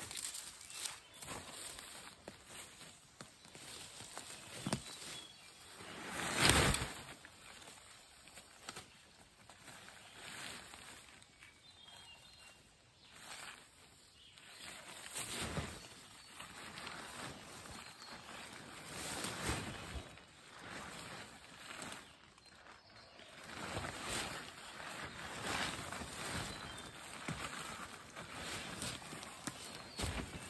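Camouflage fabric of a pop-up ground blind rustling and flapping in irregular bursts as it is unfolded and set up, the loudest about six seconds in. Footsteps on the forest floor come in between.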